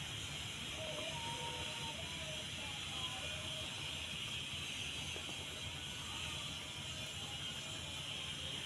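Faint, steady outdoor background: an even high hiss over a low rumble, with a few faint short tones in the first few seconds. No goat calls.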